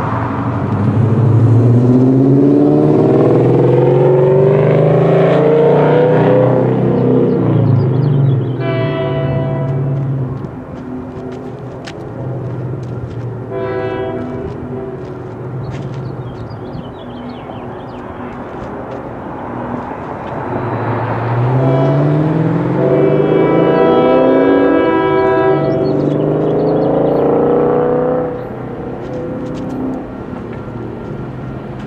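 Road vehicles accelerating past a railroad crossing, their engine notes climbing steadily. A train horn sounds in two short blasts partway through and in a longer blast later, over a second vehicle's climb.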